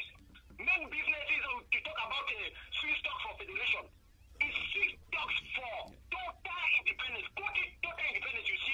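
Speech only: a voice talking continuously over a telephone line, with a thin, tinny call sound.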